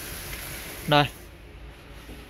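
A steady rushing hiss that dies away a little after a second in, with one short spoken word over it.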